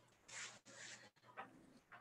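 Near silence: faint room tone over a video call, with a few brief soft noises.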